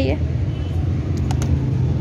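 Steady low rumble of outdoor market background noise, with a few faint clicks about a second and a half in.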